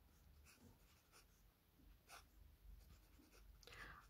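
Faint scratching of a pen on notebook paper: a few short strokes while drawing a resistor zigzag and wire lines of a circuit diagram.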